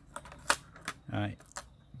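A few sharp, separate clicks of a screwdriver tip prying at the metal plate on a computer motherboard's CPU socket, levering it loose.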